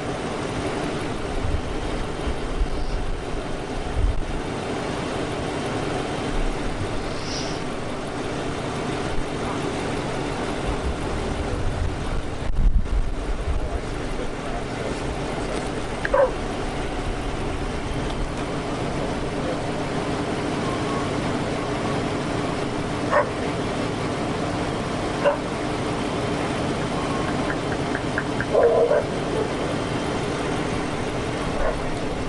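A dog barking a few times, spaced several seconds apart, with one longer bark near the end, over the steady hum of an idling patrol car.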